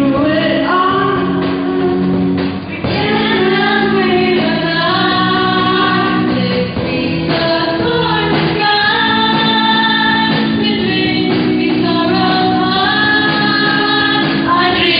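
Group of school students singing an English song together into handheld microphones, with the melody moving over steady held chords that change every couple of seconds.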